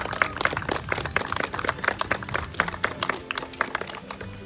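A small group of people applauding, a dense run of uneven hand claps.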